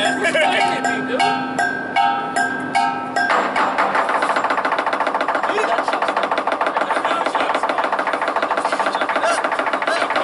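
Chinese lion dance percussion. For the first three seconds, cymbals and gong ring with strokes on a steady beat and a voice over them. About three seconds in, the lion drum, cymbals and gong break into a fast, even roll of rapid strokes, with the cymbals loudest.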